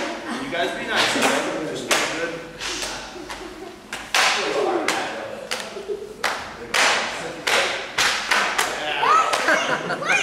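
Cloth jiu-jitsu belts lashed one after another against a bare back and torso: more than a dozen sharp slaps in quick, irregular succession.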